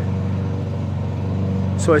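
Steady low hum of an idling engine, unchanging in pitch and level; a man's voice starts speaking near the end.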